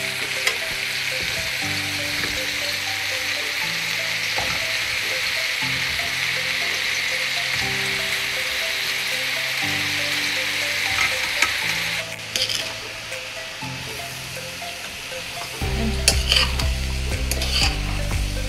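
Rice, beans and vegetables sizzling in a hot aluminium pot as fried chicken is added and stirred in with a metal spatula. The sizzle drops away about twelve seconds in, and scrapes and clinks of the spatula against the pot follow near the end.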